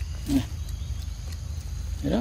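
A long-tailed macaque gives one short, sharp call about a third of a second in, over a steady low rumble.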